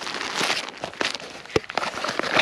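Rustling and crinkling as a fabric first-aid pouch and its plastic-wrapped contents are handled, with a short sharp click about one and a half seconds in.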